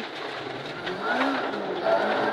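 Ford Escort Mk1 rally car's engine heard from inside the cabin, under power between corners, rising in pitch about a second in as it accelerates.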